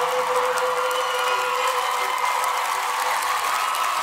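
A held sung note dies away within the first second, giving way to a crowd applauding and cheering.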